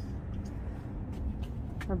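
Low, steady rumble of street traffic, with a man starting to speak right at the end.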